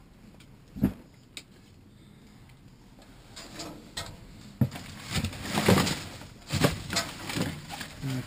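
A hand-held pole or hook prodding trash in a dumpster. Two short knocks come within the first second and a half, then plastic bags and cardboard rustle and scrape in a run of bursts over the second half.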